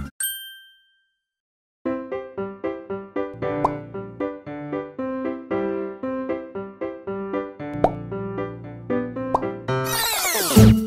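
A brief chime at the very start, then a pause of about a second and a half before light background music of short, bouncy repeated notes comes in and runs on.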